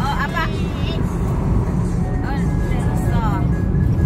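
Steady low road and engine rumble heard inside a moving car, with a song playing over it: a wavering singing voice near the start and again in the second half.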